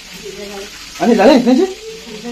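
Steady sizzle of food frying in a pan, with a man's voice speaking over it about a second in.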